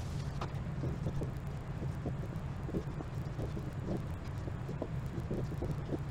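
Whiteboard being wiped and drawn on with a dry-erase marker: faint, short, irregular strokes and taps over a steady low room hum.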